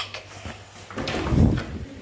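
A toilet door's latch and handle being worked, with a dull knock and rumble about a second and a half in.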